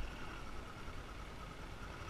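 Motorbike engine running steadily while riding, with a low rumble of wind and road noise on the microphone.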